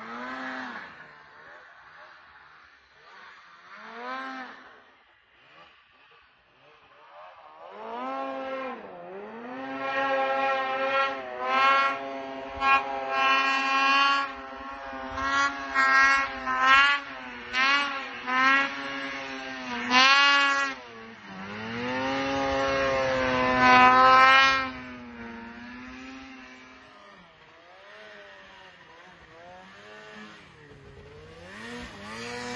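Polaris snowmobile engine revving hard as the sled carves through deep powder, rising and falling in pitch again and again. It is faint at first, loud from about eight seconds in with a quick series of short revs in the middle and a longer rev after that, then quieter in the last few seconds.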